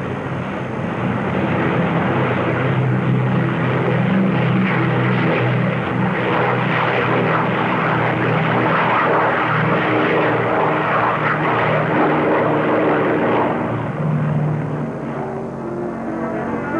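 Convair NB-36H bomber taking off at full power, its six propeller-driven piston engines and four jet engines making a loud, steady drone. The drone eases slightly near the end as the aircraft climbs away.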